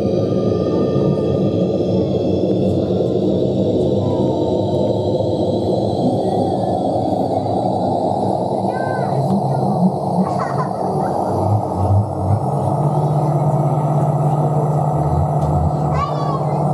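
Experimental electronic soundscape from a live performance: a dense low drone with several high tones slowly gliding upward, a few low thumps near the middle, and a steady low hum that sets in about three-quarters of the way through.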